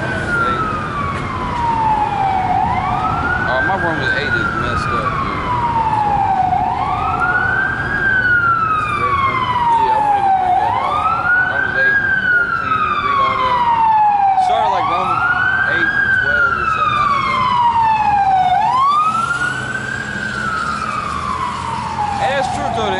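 Fire engine siren wailing, each cycle rising quickly and then falling slowly, about once every four seconds, over street traffic.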